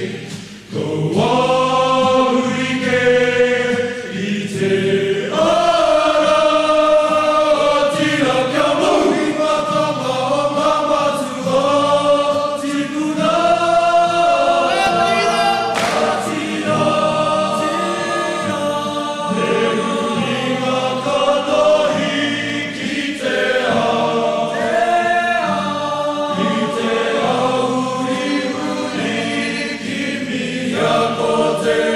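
Choir of young men's voices singing a Māori song in close harmony, held chords moving every second or two, with a brief drop in loudness just after the start.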